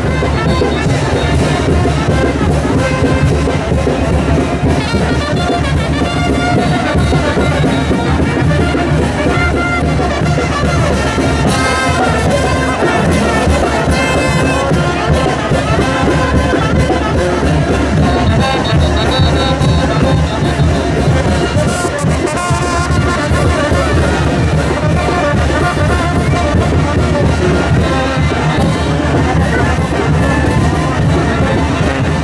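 Brass band playing music for the chinelo dance, with trumpets and trombones. The playing is loud and continuous.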